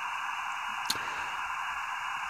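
Steady hiss from an RTL-SDR receiver in upper-sideband mode playing through a tablet speaker, with only noise in its narrow passband and no station tuned in. A single faint click about a second in.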